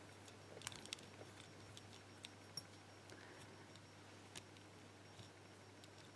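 Near silence with a few faint, small metallic clicks and ticks, clustered about half a second in and then single ones spread out: a thin steel rod being pushed into a pin chamber of an ABUS Titalium padlock to ease the pin stack out.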